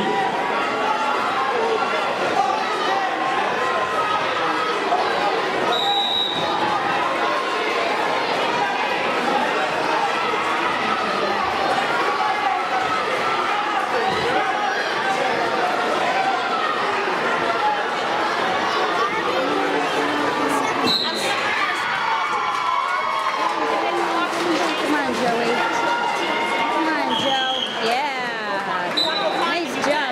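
Spectators' voices in a large, echoing gymnasium: overlapping talk and shouts, with a few brief high-pitched tones.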